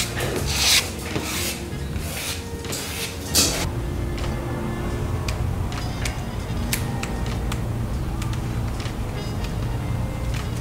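Background music with a steady bass line. In the first three or four seconds there are several short scraping sweeps, a plastic squeegee being pushed across wet carbon-fibre vinyl wrap.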